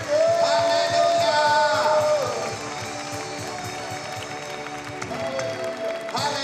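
Live worship music from a church band with keyboards and singing voices holding long, gliding notes over a steady beat. It is loud for the first couple of seconds, then carries on more quietly.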